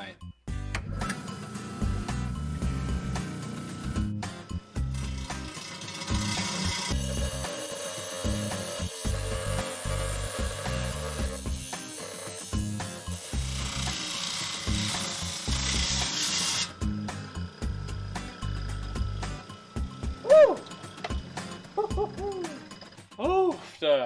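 10-inch Hi-Tech Diamond lapidary saw blade cutting through an ammonite fossil, a steady hissing grind that stops about two-thirds of the way in, with background music.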